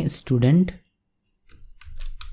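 A man's voice speaks briefly, then stops. After a short pause come a few faint clicks of a computer mouse.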